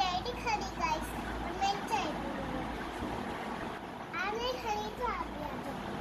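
Children's high voices chattering and calling out in short bursts over a steady background noise.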